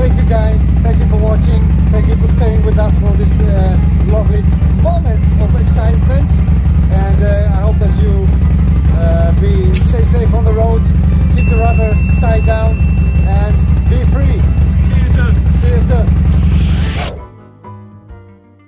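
Motorcycle engine idling steadily, started on a freshly restored battery, with men's voices over it; the engine sound cuts off suddenly near the end.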